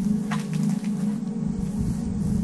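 A steady, low buzzing hum of many bees at a large nest in the walls. Low rumble from wind on the microphone comes in near the end.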